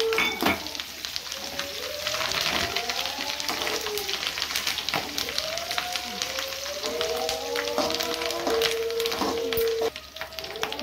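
Curry leaves, garlic and dry coconut crackling and sizzling in hot oil in an aluminium kadai, stirred with a slotted metal spoon that scrapes the pan.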